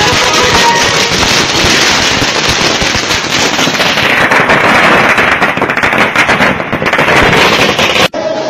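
Loud firecrackers going off in a rapid, dense string of cracks, with music playing underneath.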